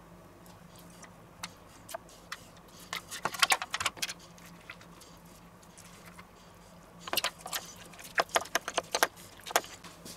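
Metal teaspoon scraping and clicking against plastic tubs as sour cream and cream cheese are spooned into a bowl, in two bursts of quick clicks about three seconds in and again from about seven seconds.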